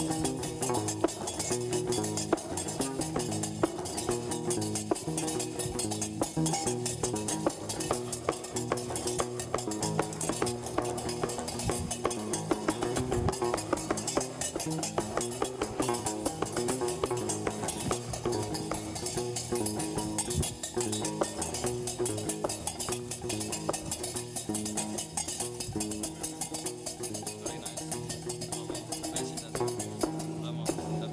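Gnawa music: a guembri, the three-string bass lute, plucked in a repeating low bass pattern, over a fast, unbroken metallic clatter of qraqeb iron castanets.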